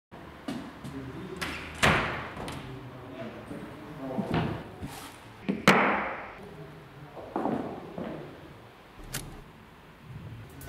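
Scattered knocks and thuds in a bare room, each ringing out briefly; the two loudest come about two and six seconds in.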